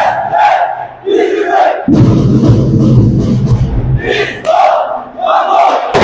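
Marching band members and dancers shouting together in short, loud unison cries, a chant called out in the middle of the routine, with a low stretch of drums and low brass in between.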